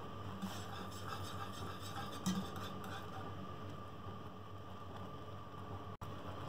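Thickened chocolate milk-and-cornflour mixture bubbling faintly in a saucepan over a gas flame, with a few soft pops over a steady low hiss; the thick bubbling shows it has cooked to a thick consistency.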